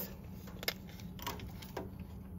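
Steel tape measure being handled and moved along a small metal machine case: one sharp click about two-thirds of a second in, with faint rustling and tapping around it.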